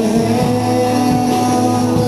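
Live band music: acoustic guitar strummed with electric guitar, playing a steady chord passage without clear singing.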